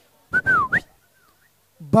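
A short whistle, about half a second long, that dips in pitch and then sweeps up, over a brief breathy hiss. A fainter whistled glide follows.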